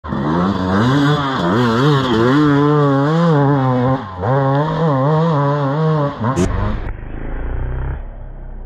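Hard enduro dirt bike engine revving up and down in quick waves as the rider works the throttle climbing a steep, loose dirt slope. Near the end it gives way to a short sharp sound and a lower steady hum.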